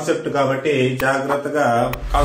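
Speech only: a man lecturing.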